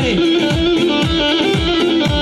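Loud amplified folk dance music for a wedding line dance, with a steady repeating drum beat under a sustained melody line.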